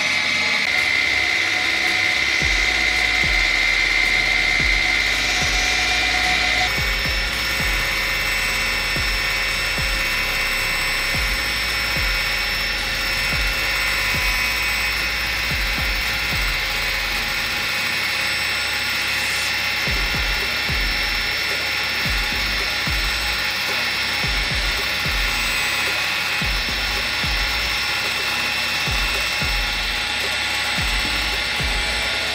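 Homemade battery-powered table saw's electric motor running with the blade spinning free, not cutting: a steady whine that changes in tone about seven seconds in.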